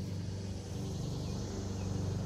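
A steady low mechanical hum over faint outdoor background noise.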